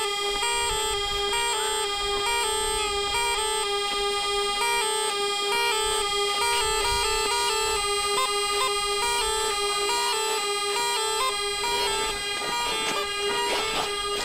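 Bagpipe playing a lively, repeating folk-dance tune over a steady reedy drone.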